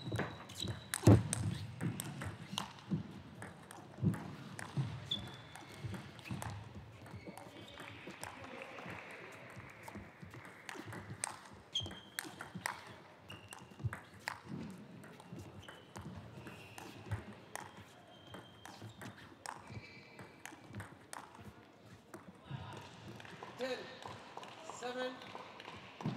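A celluloid-style table tennis ball clicking sharply off paddles and the table throughout a rally, densest in the first few seconds. Brief high squeaks of shoes on the court floor come between the hits.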